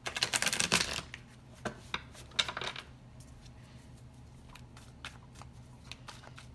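A deck of tarot cards being shuffled by hand. There is a dense rattling burst in the first second, a shorter one about two and a half seconds in, then scattered light clicks of cards.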